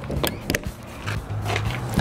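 Metal latch on a caravan's checker-plate aluminium compartment door being worked open: two sharp clicks about a quarter second apart. A low steady hum runs underneath.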